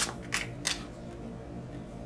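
Three crisp snaps of a deck of tarot cards being shuffled in the hands, about a third of a second apart in the first second, then faint room tone.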